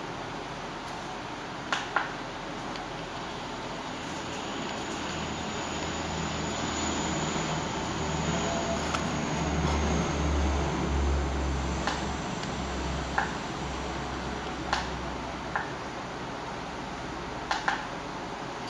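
Computer mouse button clicks, a double click about two seconds in, scattered single clicks later and another quick pair near the end, over steady background noise. A low rumble swells through the middle and fades.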